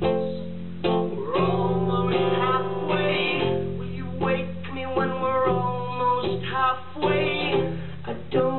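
Live solo performance: an acoustic guitar strummed steadily while a man sings over it.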